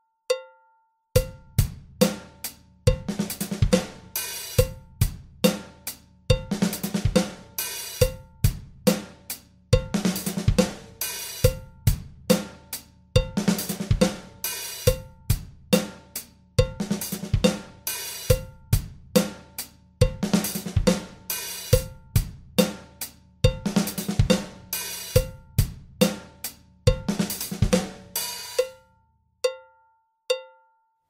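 Electronic drum kit playing a repeating one-bar groove. Each bar is a plain eighth-note groove followed by a fast 32nd-note run of bass drum and left-left-right-right-left-left hand strokes, a snare accent and an open hi-hat. A steady click-track tick runs under it and carries on alone after the drums stop near the end.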